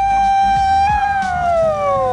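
A man's long, loud yell held on one high note, then sliding down in pitch through the second half.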